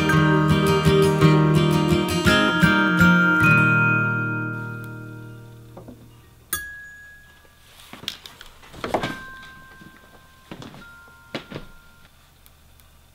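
The song's ending: strummed acoustic guitar chords, the last chord left ringing and fading away over a couple of seconds. Then a few sparse single glockenspiel notes ring out, mixed with soft knocks.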